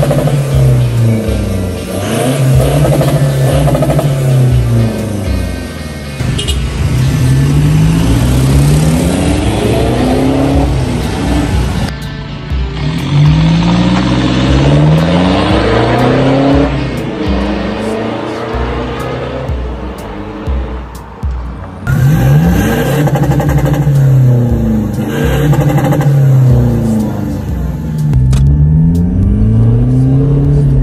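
Toyota Fortuner's ECU-tuned 2.4 L 2GD four-cylinder turbodiesel revved again and again, its pitch rising and falling every couple of seconds, with music playing along.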